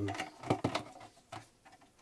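A few short clicks and crinkles of a clear plastic collector's case being handled in gloved hands.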